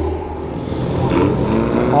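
A low, steady vehicle engine rumble under a wash of outdoor noise, with faint voices in the background.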